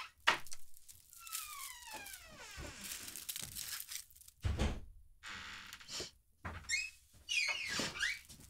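A cat gives one long falling meow about a second in, and a door shuts with dull thuds, one just at the start and a heavier one at about four and a half seconds.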